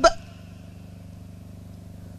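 Steady low mains hum through the microphone and amplifier, holding one even pitch. The last syllable of a man's speech cuts off just at the start.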